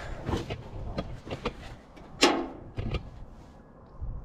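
Scattered light clicks and knocks from handling the controls of a Farmall 504 tractor before starting it, with one louder, briefly ringing clank about two seconds in.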